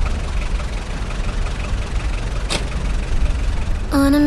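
A steady low rumble of the kind an idling engine makes, with one brief sharp sweep about two and a half seconds in.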